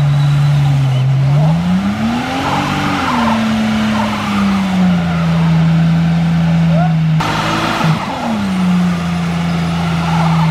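A crossover SUV's engine revving under load as its wheels spin in snow: the SUV is stuck. The engine pitch climbs and drops back about two seconds in and again near eight seconds, holding steady between, over a constant hiss of tires churning.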